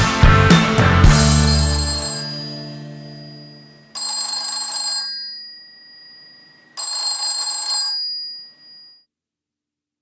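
A rock band's final hits and last chord ring out and fade. Then a telephone bell rings twice, each ring about a second long, the second about three seconds after the first.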